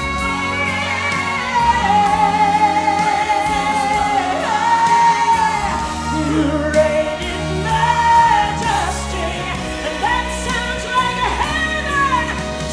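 A woman singing a southern gospel song into a microphone, holding long, wavering notes over instrumental accompaniment.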